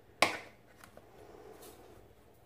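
A sharp plastic snap as the green flip-top shaker cap of a herbes de Provence jar is flipped open, followed by a few small clicks and a faint rustle of dried herbs being shaken out.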